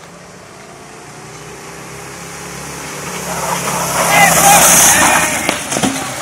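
Small motor of a motorized beer cooler running as it is ridden toward the listener, growing steadily louder. Near the end come a few knocks as the cooler tips over and the rider falls off.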